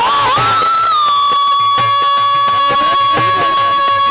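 Rajasthani folk devotional music: a high melodic line wavers at first, then settles about a second in into one long held note, over a steady drum beat.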